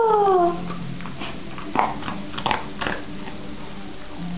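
A dog's loud whine, falling steadily in pitch and ending about half a second in, followed by a few light taps.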